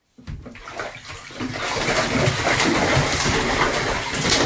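Steady rush of running water, building over the first second or so and then holding steady.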